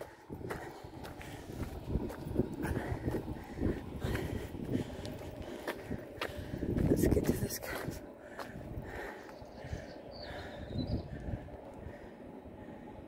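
Footsteps crunching along a dusty, gravelly street as the person carrying the camera walks, with a faint voice that rises briefly about seven seconds in.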